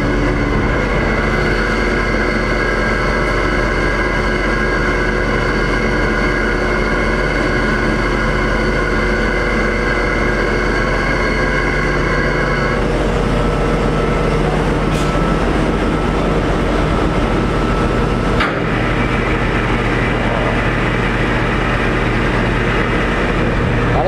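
A ship's crane and winch machinery runs steadily while lowering a CTD rosette on its cable, a low rumble with several steady humming tones. Most of the tones stop about halfway through, leaving the rumble and a rushing noise.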